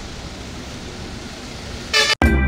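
A small car moving slowly on a wet road, a steady noise of engine and tyres, with a short pitched blast right at the end.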